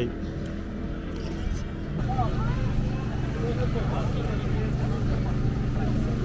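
A steady, low mechanical hum, like a running engine, that grows louder about two seconds in, with faint voices over it.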